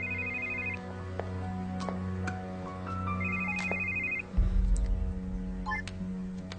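Mobile phone ringing: a trilling electronic ring about a second long, heard twice about three seconds apart, over soft background film music. A brief low rumble follows the second ring.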